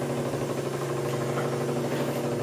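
Air compressor running steadily, pumping air through the pressure line into the sealed submarine hull to pressurize it. It makes a low, even motor hum with a fast regular flutter.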